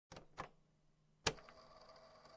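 Three short, sharp clicks in the intro of a trap track: two faint ones near the start and a louder one just over a second in, after which faint steady tones hang on.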